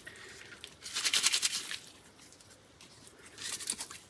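Soaked paper being squeezed and rubbed apart between the fingers: a burst of fine crackling and tearing about a second in, and a shorter one near the end.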